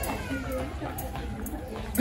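Indistinct voices with a small child's high, wavering wordless vocal sounds over the hum of a busy supermarket.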